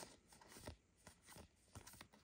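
Near silence, apart from a few faint soft slides and flicks of Disney Lorcana trading cards being moved one by one through the hands.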